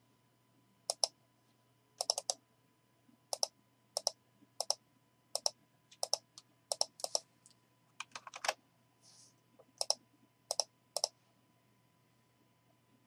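Sharp clicks of a computer mouse and keyboard, mostly in quick pairs about once a second, with a denser flurry about eight seconds in.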